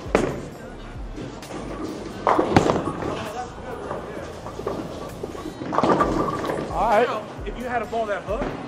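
A bowling ball released onto a wooden lane with a sharp thud about two and a half seconds in, then rolling down the lane, over background music and voices in the bowling alley.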